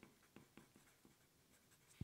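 Faint scratching of a wooden graphite pencil on paper as words are written: a run of short, quiet strokes, several a second.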